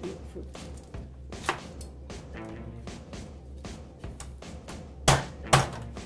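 Chef's knife cutting an onion on a plastic cutting board: scattered sharp knocks of the blade on the board, the loudest two about five seconds in, over quiet background music.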